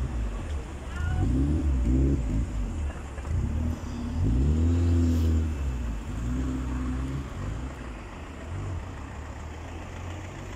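Street traffic: a car engine rises and falls in pitch a few times over a steady low rumble, loudest about four to five seconds in.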